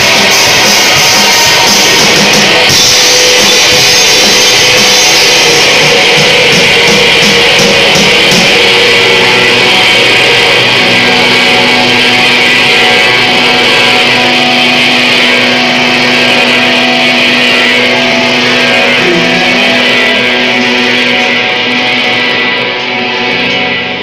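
A rock band playing live: electric guitars with drums and cymbals. The cymbal hits stop about nine seconds in, leaving the guitars on held, ringing notes.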